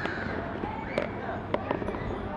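People talking in the background, with a few sharp clicks or taps: one about a second in and a quick run of three near the end.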